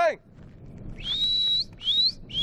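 A man whistling with his lips to call a dog: one long whistle that rises and then holds, about a second in, followed near the end by a second short rising whistle.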